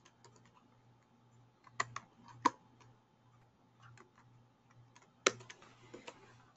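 Computer keyboard keys and mouse buttons clicking in short, scattered strokes, with a few sharper clicks about two seconds in and again near the end, over a faint low hum.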